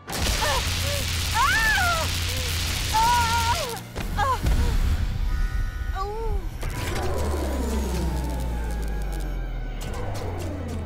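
Cartoon sound effects of electrocution: a crackling electric buzz with short pained cries from a giant woman gripping live power lines, then a hit as she falls. Near the end, a falling-pitch power-down whine as the city's electricity fails in a blackout.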